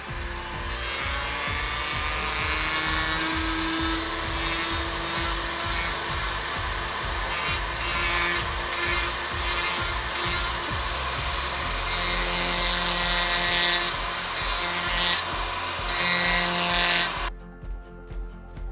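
Flex-shaft rotary carving tool spinning a carbide burr against wood, with a steady whine and rasping as it grinds away the background around a raised star. The pitch and grit shift as the burr is pressed and moved, and the grinding stops abruptly about a second before the end.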